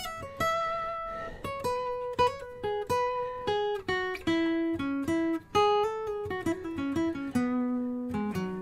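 Steel-string acoustic guitar playing a single-note lead line in E major pentatonic: picked notes one after another, each left to ring, the melody working mostly downward in pitch toward the end.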